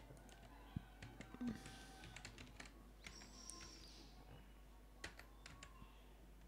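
Faint computer keyboard key presses and mouse clicks: scattered sharp clicks, some in quick little clusters.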